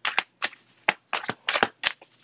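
A deck of tarot cards being shuffled by hand: a run of short, quick card flicks and swishes, about eight in two seconds.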